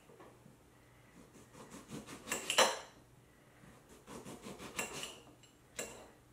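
Kitchen knife cutting limes, the blade knocking down through the fruit in two short runs of taps, the loudest about two and a half seconds in, then one sharp knock just before the end.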